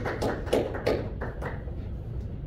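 A few spoken words, then a steady low room hum with a few faint taps.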